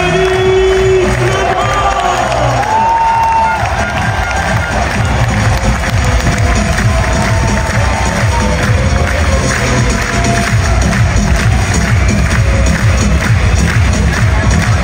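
Music playing loudly over an arena crowd cheering and clapping, with a few held shouts or whoops in the first few seconds.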